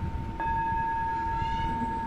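A bell-like ringing tone, struck about half a second in and then held steady without fading, over a low background rumble.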